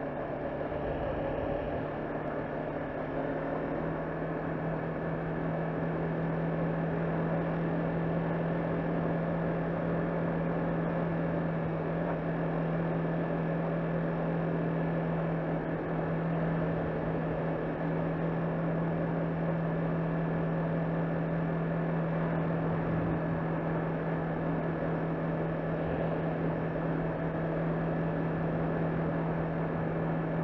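Honda CBR500R motorcycle under way at road speed: the 471 cc parallel-twin engine running along with wind and road noise, a steady low drone that grows slightly louder a few seconds in.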